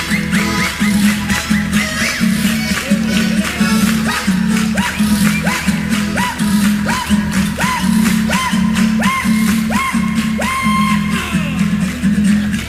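Chilean folk music played on acoustic guitar and button accordion over a steady bass beat, with no singing. From about four seconds in, a short rising note is repeated about twice a second.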